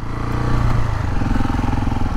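KTM 690 Enduro R's single-cylinder engine running steadily while the bike rides along at low speed.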